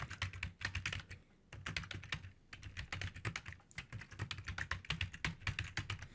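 Typing on a computer keyboard: a quick run of keystrokes, with a brief pause about a second and a half in.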